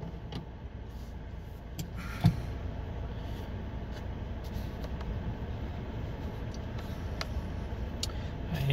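Ford Ranger's 2.3-litre EcoBoost four-cylinder idling steadily, heard from inside the cab, with one sharp clunk about two seconds in as the automatic transmission is shifted from park into drive. A few faint clicks come before and after it.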